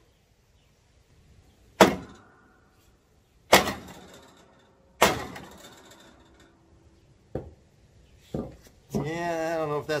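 Three loud clanks about a second and a half apart, each ringing briefly, then two softer knocks. They come as gear is handled to pull a bent mower deck straight.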